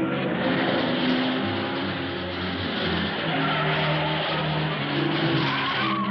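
A car driving fast with tyres squealing, under dramatic film music that continues throughout.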